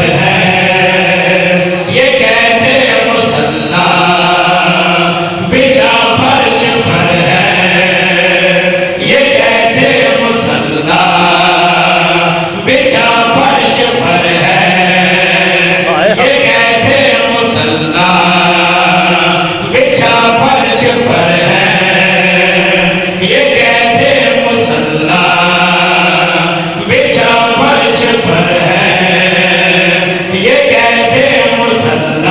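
A group of men chanting a devotional qasida together through a microphone and loudspeakers, in short repeated phrases about every two seconds.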